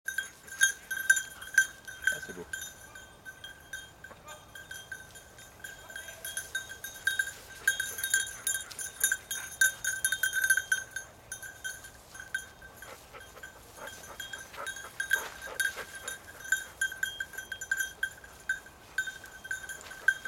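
A dog's collar bell ringing in quick, irregular jingles as the dog runs and searches through long grass. It is one clear, high ring with no pauses of more than a moment.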